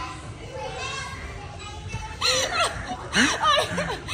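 Voices echoing in a large hall, then from about two seconds in, loud, high-pitched laughing and squealing from a woman who has just fallen on a trampoline.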